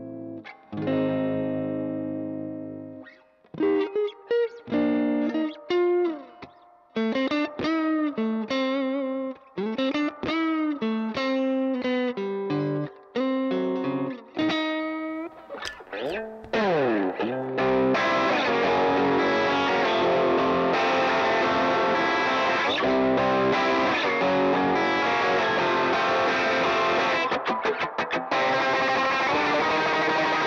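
Telecaster electric guitar played through overdrive and effect pedals: held notes at first, then single-note lines with pitches that bend and glide, and for the last third a steady, dense run of distorted playing.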